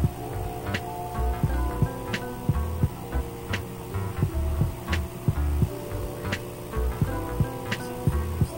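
Background music with a steady beat and heavy bass.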